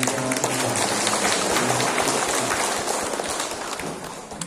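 A crowd applauding in a hall, the clapping dense and steady before tapering off near the end.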